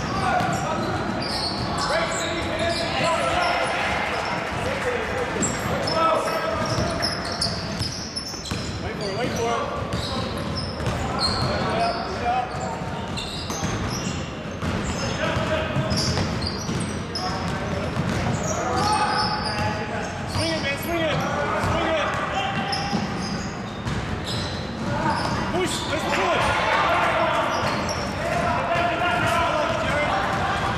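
Basketball being dribbled on a hardwood gym floor, with indistinct voices of players and spectators calling out in a large echoing hall.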